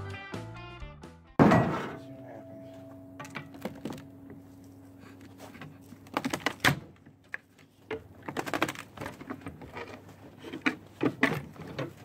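Organ music ends a second or so in, followed by a loud thump. Then come a series of sharp metal clanks and knocks from hand tools working on a fire-damaged 6.0 L LY6 V8 engine on its stand.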